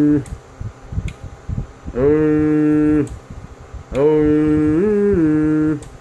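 A man's voice holding a long, steady "ohh" into a CB radio microphone three times, each a second or two long. The third one steps up in pitch for a moment near its end. The held tone modulates the radio so the amplifier can be driven for a peak-power reading on the wattmeter.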